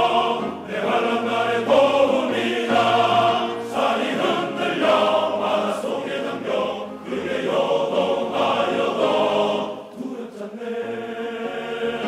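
Large men's choir singing in several voice parts, phrase after phrase, with a short lull about ten seconds in before the voices come back.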